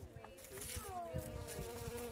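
Bees buzzing as they fly and forage at a flower, a faint wing hum whose pitch shifts and glides as they move.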